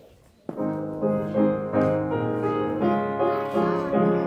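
Piano playing the introduction to a congregational hymn. Full chords enter about half a second in and move on in steady, hymn-like changes.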